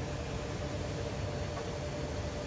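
Steady mechanical hum and hiss of foundry machinery around a molten-aluminium furnace, with a faint steady tone running through it.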